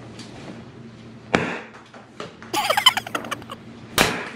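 Two sharp pops from an Atomic Power Popper pump-action foam-ball gun firing, one about a second in and one at the very end. Between them come brief high-pitched vocal sounds.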